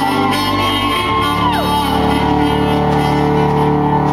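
Live music in a large hall: steady held chords sounding from the stage, with a falling whoop from someone in the audience about a second and a half in.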